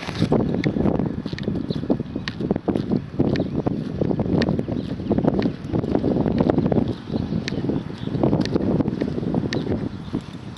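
Wind buffeting the microphone in irregular gusts, with scattered light clicks and scuffs over it.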